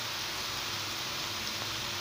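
Cauliflower and peas frying in hot ghee in a metal pot, giving a steady sizzling hiss.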